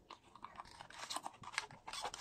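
Faint crackling and scraping of a cardboard box being opened, with the plastic-wrapped kit inside crinkling as it is pulled out near the end.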